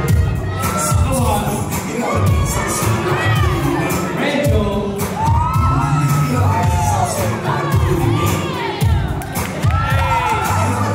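A crowd of dancers cheering, shouting and whooping over battle music with a steady pounding bass beat.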